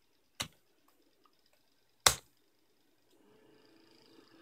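Computer keyboard keystrokes: a light key click about half a second in, then a single louder click about two seconds in, the Enter key sending the speed value 150 to the Arduino motor sketch. A faint hum comes in near the end.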